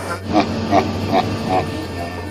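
A man laughing hard in four short bursts, a little over two a second, over the steady low drone of a Boeing 737-200 airliner cabin in flight.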